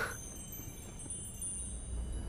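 Soft, high chime tones ringing on in the soundtrack, opening with the fading tail of a brief whoosh.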